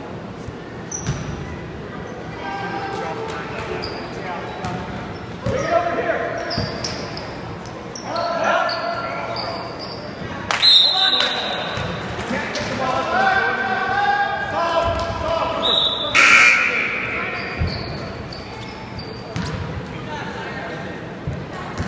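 A basketball being dribbled and bouncing on a gym floor, with brief high squeaks of sneakers, under indistinct shouting and talk from players and spectators. Everything echoes in the large gym.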